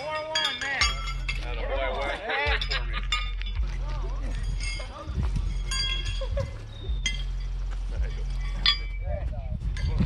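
Steel pitching horseshoes clanging against the stakes and against each other: a series of sharp, ringing metallic clinks at uneven intervals, with a steady low hum underneath.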